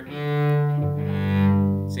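Cello bowed on the D string, then the G string joins about a second in, the two sounding together as a perfect fifth.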